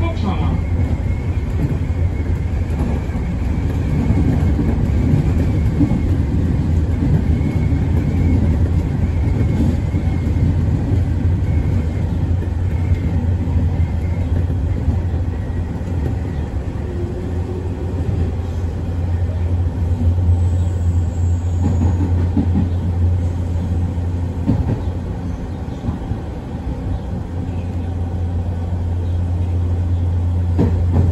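Nankai 1000 series electric train heard from inside the driver's cab while running: a steady low hum and rumble of motors and wheels on the rails, dipping somewhat in loudness about three-quarters of the way through.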